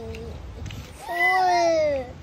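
A young child's high-pitched wordless whine: the tail of one falling call at the start, then a louder call of about a second that falls slightly in pitch.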